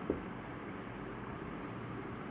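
Marker pen writing on a whiteboard: faint scratching strokes over a steady room hiss, with one brief tap just after the start.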